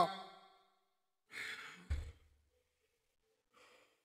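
A man lets out a heavy, exasperated sigh about a second in, followed at once by a short dull thump. A fainter breath follows near the end.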